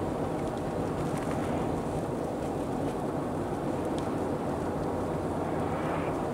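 Steady road noise inside a vehicle's cabin while driving on a snow-covered highway: tyres, engine and wind blend into one even rumble. A few faint ticks sound over it.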